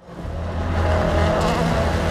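A rally car's engine at high revs, cutting in suddenly and loud over a steady low drone.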